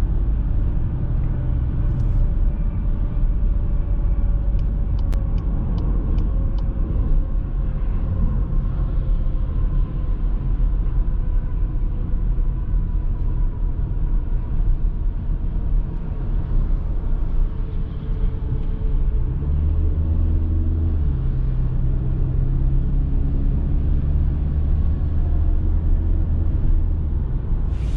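In-cabin sound of a 2021 VW Passat's 2.0 TDI four-cylinder diesel (122 hp) at motorway speed: a steady road-and-engine rumble whose engine note sinks slowly as the car slows. About twenty seconds in, the automatic gearbox shifts down and the engine note steps up as the car accelerates again.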